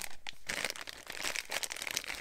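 Clear plastic bag crinkling in irregular crackles as it is handled and pulled from the packaging.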